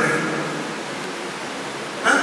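A man's voice through a microphone says a brief phrase at the start, then pauses, leaving a steady hiss in a hall.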